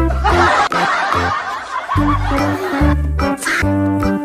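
A snickering laugh sound effect cut into an upbeat children's song. The laugh fills most of the first three seconds while the music thins out, and the song's bass and melody come back in about two seconds in.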